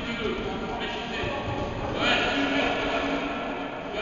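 Indistinct voices in a large, echoing sports hall, with one louder voice about two seconds in.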